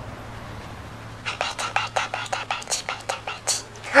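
A person whispering a quick string of hushed words, starting about a second in and stopping just before the end, over a faint steady low hum.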